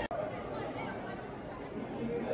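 Indistinct chatter of several people talking, with a momentary dropout just after the start.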